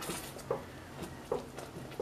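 Thick cocoa fudge of evaporated milk, sugar and cacao bubbling in a stainless steel pot as it is stirred with a wooden spoon, with two soft plops. It has cooked down nearly to the stage where the spoon drag shows the bottom of the pot.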